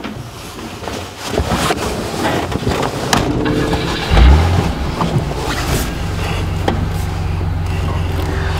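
Old car's engine running as the car drives off, with rattles and road noise and laughter at the start; a strong low thump about four seconds in, then a steady low drone.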